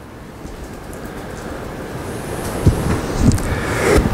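Rustling, rumbling noise on the microphone, growing louder, with two soft thumps in the second half.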